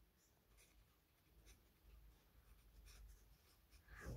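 Very faint scratching of a pen writing words on notebook paper, in short irregular strokes.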